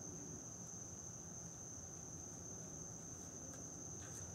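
Faint room tone: a steady, thin high-pitched whine over a low hum, with no distinct work sounds.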